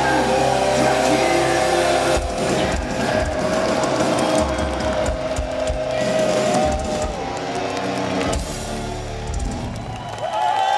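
Heavy metal band playing live, recorded from within the crowd: distorted electric guitars, bass and drums under a long held melody line. Drum hits drive through the middle, and the playing thins out near the end.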